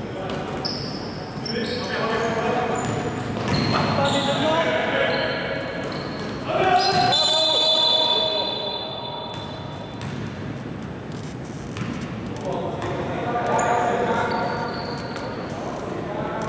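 Indoor basketball in a large echoing gym: the ball bouncing on the hardwood floor, many short high sneaker squeaks, and players shouting. About seven seconds in, a steady high whistle blast lasting over a second stops play.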